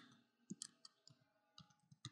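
Faint computer keyboard keystrokes: about six soft, unevenly spaced clicks as a short command is typed.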